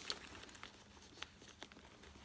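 Faint rustle of tissue paper and a few light clicks of metal hardware as a strap's clip is fastened onto a handbag's handle ring.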